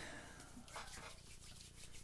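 Faint, soft rubbing of hands working in hand sanitizer.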